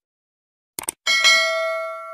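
A short mouse-click sound effect, then a bright bell chime about a second in that rings on and slowly fades: the click and notification-bell sound of a subscribe-button animation.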